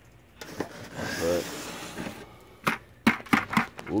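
Gritty shingle sand and mud being scraped out of a rain gutter by a gloved hand, a rough scraping noise, followed near the end by several sharp knocks and clatters of debris and tools against the gutter and bucket.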